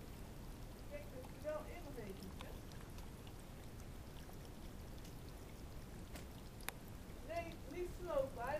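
Stone-ball garden fountain running: a faint, steady trickle of water. Brief voice-like sounds come about a second in and again near the end.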